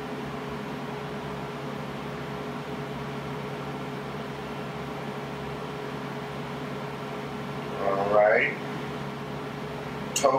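Steady room tone: a low hum and even hiss, with one short voiced sound, rising in pitch, about eight seconds in.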